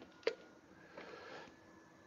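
Quiet room tone with one faint click about a quarter second in and a soft brief rustle about a second in, from the camera being moved by hand.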